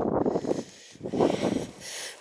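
Wind buffeting the microphone of a hand-held camera in uneven gusts. It drops away briefly just before the middle, then picks up again more softly.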